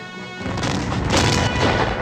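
A battle explosion from a war film soundtrack: a heavy boom breaks in about half a second in and rumbles on loudly, over a held music chord.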